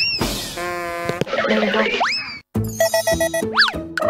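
Comic cartoon-style sound effects over playful background music: quick rising whistle-like slides, one at the start and another about two seconds in, and a rising-and-falling boing near the end. After a brief cut-out partway through, a bouncy, rhythmic tune takes over.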